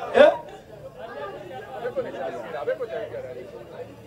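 Several people talking at once, indistinct chatter, with a brief loud voice just after the start.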